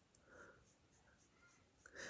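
Near silence, with faint soft strokes of a makeup brush sweeping over the skin of the cheek, a few light strokes a second.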